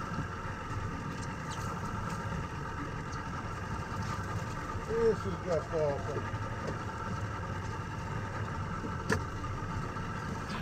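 Steady low hum of an idling boat engine. A short voice-like sound comes about five seconds in, and a single sharp click near the end.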